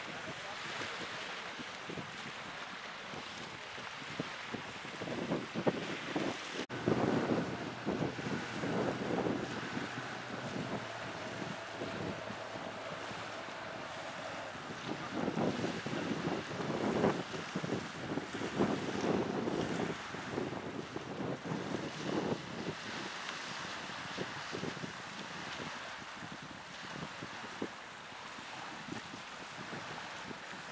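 Wind buffeting the microphone in irregular gusts, heaviest in two spells near the start and middle, over waves washing on a shore.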